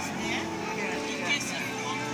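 Voices talking over background music with sustained tones.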